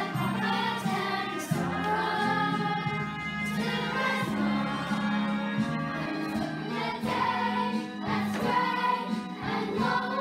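Children's choir singing with instrumental accompaniment: several voices together over steady, held low notes.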